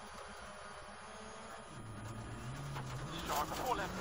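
Rally car engine heard from inside the cabin on a gravel stage: the revs drop sharply about two seconds in, then climb again as the car drives through a bend.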